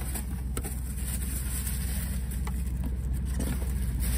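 Idling engine: a steady low rumble. Faint rustling of tissue paper and a few light clicks from a boot box being unpacked sit over it.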